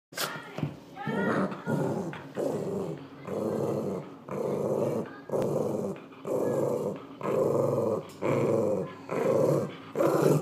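Small dog growling in a steady run of short growls, about three every two seconds, while it tugs on a rope toy.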